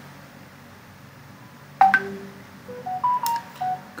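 A sharp click about two seconds in, then a run of about seven short electronic beeps, single clean tones stepping up and down in pitch like a simple tune, similar to phone keypad tones.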